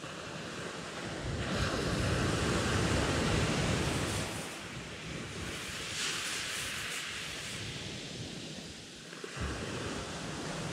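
Surf breaking and washing on a shingle beach, swelling loudest a couple of seconds in, then easing, with a smaller surge about six seconds in.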